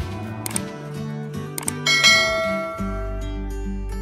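Background music, with sharp click sound effects and a bright bell chime about two seconds in from a subscribe-button animation.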